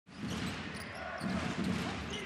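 A basketball being dribbled on a hardwood court, over the steady murmur of voices in an arena.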